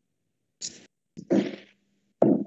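Brief, choppy bursts of noise from an open microphone on a video call. There are two of them, and the louder one, about one and a half seconds in, carries a low hum under it.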